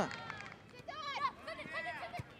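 Faint, distant shouted calls of players on the pitch, a few high calls rising and falling about a second in.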